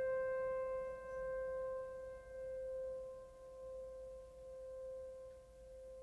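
Music ending on a single held keyboard note that slowly dies away, its loudness swelling and dipping about once a second as it fades.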